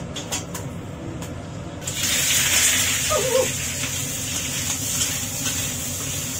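Slices of meat hitting hot oil in a wok on a gas burner: a sudden, loud, steady sizzle starts about two seconds in, after a few light clicks of the spatula against the wok.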